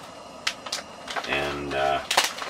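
Plastic corn chip bag crackling as a knife is pushed into its top, two short crackles, followed by a brief sound of the man's voice.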